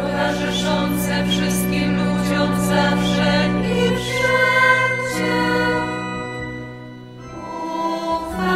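A choir of religious sisters singing a hymn in long held notes over a steady low accompaniment. The phrase dips in loudness near the end before the next one begins.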